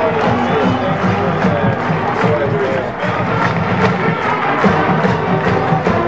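Marching band playing: brass chords over a steady drum beat.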